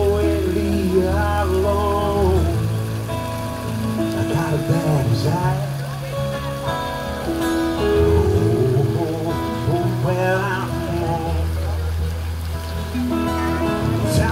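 Live music: a sung melody with held and sliding notes over steady sustained bass notes, with a faint patter of falling water underneath.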